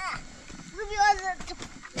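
A livestock animal bleating once, a quavering call about half a second long near the middle.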